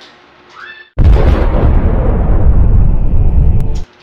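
Gas stove burner on an LPG tank lit with a lighter. A sudden loud whoosh of igniting gas comes about a second in and settles into a steady, heavy flame roar close to the microphone, which cuts off abruptly just before the end.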